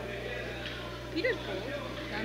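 Indistinct voices over a steady low hum, with one voice rising and falling in pitch a little over a second in.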